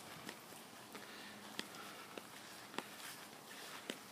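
Faint footsteps of a person walking across a grass lawn, a soft step about every half second.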